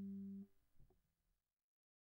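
The last held note of an electric bass guitar dying away, then muted abruptly about half a second in, followed by a faint touch of string noise.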